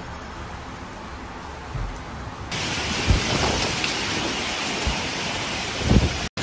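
Heavy thunderstorm rain and wind. The downpour noise steps up suddenly about two and a half seconds in to a much louder, denser roar, with several deep thumps scattered through it.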